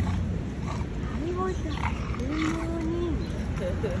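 Bulldogs whining in excited greeting: a short whine about a second in, then a longer one that rises, holds and drops, and a few higher squeaks near the end.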